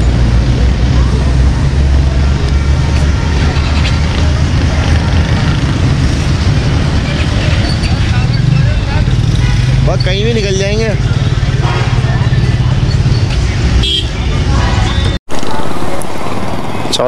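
Several motorcycle engines idling together, a steady low rumble. About ten seconds in, a horn sounds briefly in a warbling, wavering tone.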